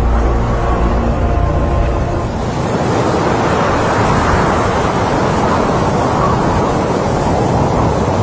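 A low, sustained music chord that stops about two seconds in, followed by a loud, steady rushing noise like wind or surf that swells slightly and holds.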